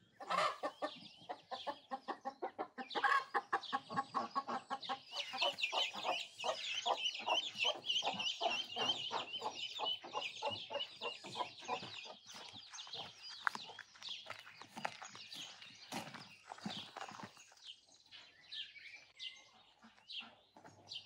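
A hen clucking in a fast, steady run, while ducklings and chicks peep in high chirps. The sound starts suddenly, is busiest through the first half, and fades away near the end.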